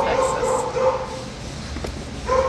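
Dogs in a shelter kennel barking in quick repeated barks, about four a second, strongest in the first second and fading after.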